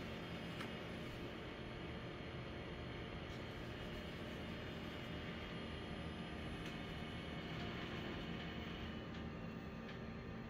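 Quiet, steady room tone: a low hum and hiss with a few faint clicks.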